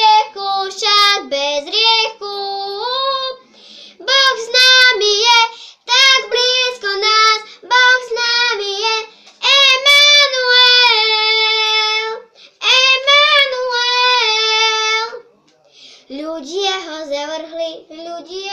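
A young girl singing a Slovak Christian song unaccompanied, in phrases with long held notes and a short pause for breath about fifteen seconds in.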